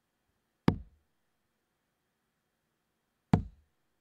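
Two steel-tip darts thudding into a Winmau bristle dartboard, one about 0.7 s in and the next about 2.6 s later, each a single sharp knock.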